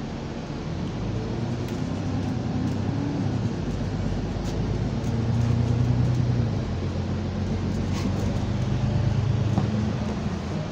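Arriva London bus T310's engine and drivetrain, heard from inside the passenger saloon. The low note rises and grows louder as the bus pulls, loudest about halfway through and again near the end.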